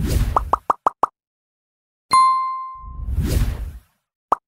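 Animation sound effects for a subscribe-and-like graphic: a whoosh with a quick run of five short pops in the first second, a single bright ding about two seconds in, then a second whoosh.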